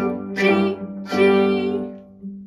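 Cello bowing the note G, played with the fourth finger on the D string. Two more notes on the same pitch start about a third of a second in and just after a second, and the last one is held and dies away near the end.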